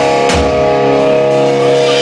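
Rock band playing live: a drum and cymbal hit lands about a third of a second in, then a held guitar chord rings on steadily.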